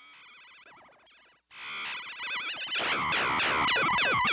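Ciat-Lonbarde Plumbutter analog synthesizer played through a Max/MSP sampling and effects patch: warbling, wobbling electronic tones, a brief cut about one and a half seconds in, then louder. Near the end it turns into a rapid run of falling pitch sweeps, about three a second.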